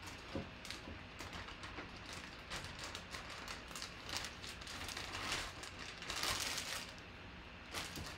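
Irregular light clicks and crinkly rustling from handling, with a louder rustle about six seconds in.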